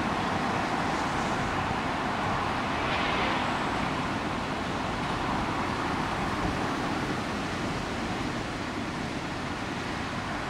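Train of open engineering wagons rolling away on the rails, a steady rumble slowly fading as it recedes.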